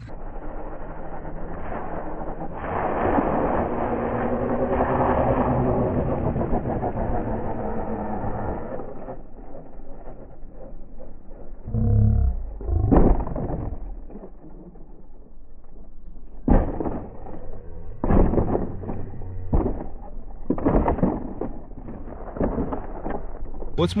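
Slow-motion audio, slowed and pitched deep: the battery-powered RC truck running, heard as a low, drawn-out drone with slurred, deepened voices. Then a heavy thud about twelve seconds in as the truck hits the bowl, and several slow knocks in the last third.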